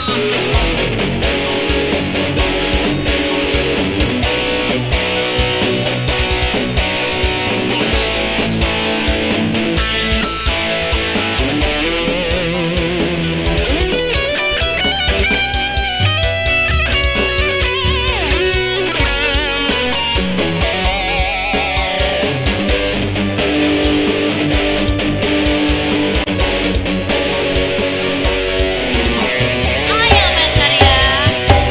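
Live band music in an instrumental break: an electric guitar plays a lead line over a steady drum beat, with bent and wavering notes through the middle of the break.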